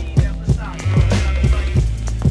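Mid-1990s underground boom-bap hip hop track playing from vinyl: a deep bass line under a repeating kick-and-snare drum beat, with a sampled melodic line over it.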